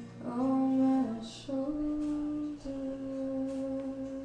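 A woman's voice singing three long, held wordless notes at the close of a song, the middle note a little higher than the other two.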